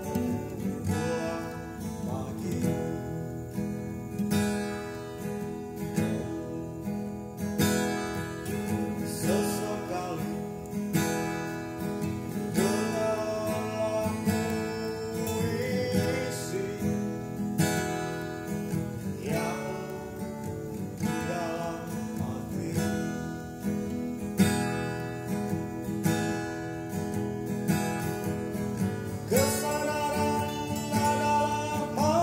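Acoustic guitar strummed in a steady rhythm with a man singing a slow melody over it.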